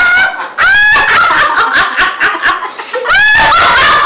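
A woman laughing hard: loud, high-pitched cackling laughter in rapid repeated pulses, with a brief break before a second bout starts about three seconds in.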